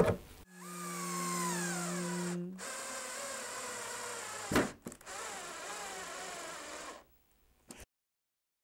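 An 18-volt cordless drill-driver drives long screws into a wooden sled fence in three runs, its motor note sliding down as each screw takes load. There is a single sharp knock between the second and third runs.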